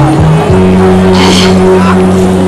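A woman's voice singing Hmong kwv txhiaj, a chanted sung poetry, into a microphone. After a short break about half a second in, she holds one long steady note.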